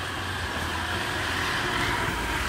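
Small motorcycle engine running steadily with a low, even hum.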